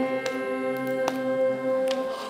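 A small choir holds one long sustained note at the end of a sung phrase, fading out near the end.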